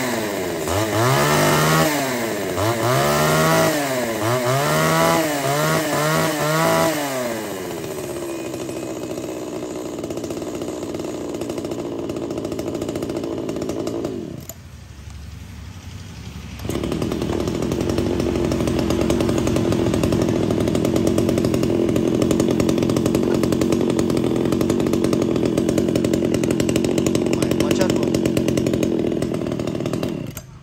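Ryobi top-handle chainsaw's small two-stroke petrol engine being test-run: revved in about six quick throttle blips over the first several seconds, then running steadily. It drops quieter for a couple of seconds about halfway, then runs steadily again and cuts off at the end.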